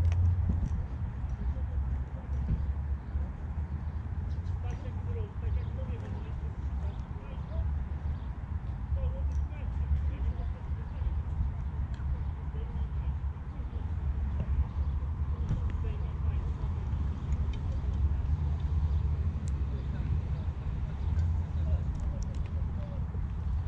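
Wind buffeting the microphone outdoors, a low, uneven rumble that rises and falls, with a few faint ticks over it.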